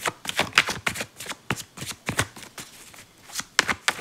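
A tarot deck shuffled by hand: a rapid run of cards slapping and flicking against each other, with a short pause about three seconds in before the shuffling picks up again.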